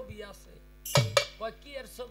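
Two sharp metallic clashes about a second in, a quarter of a second apart and much louder than the man's voice beneath them.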